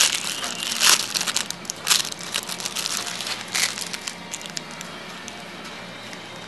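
Thin plastic wrapper crinkling and crackling in the hands as a 58 mm lens filter is unwrapped, the crackles thinning out and stopping about four and a half seconds in.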